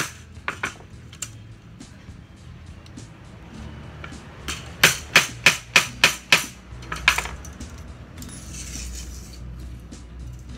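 Claw hammer striking a pad held against the end of an aluminium screen-frame profile, driving a metal corner lock into it. A few light taps come first, then a quick run of about eight sharp strikes, roughly three a second, from about five to seven seconds in.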